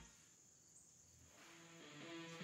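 Near silence: a faint, steady high-pitched insect drone in the woods, with guitar music fading back in during the second half.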